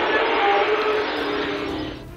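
Loud static-like rushing noise with a few faint held tones underneath, easing off slightly and then cutting off suddenly: a camera feed breaking up and going dead.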